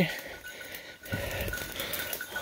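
Footsteps and rustling of brush and leaves as a person pushes through dense undergrowth. A faint, steady high tone sounds throughout.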